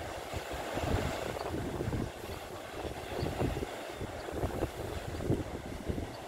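Wind buffeting the microphone in uneven gusts over the wash of surf breaking on a rocky shore.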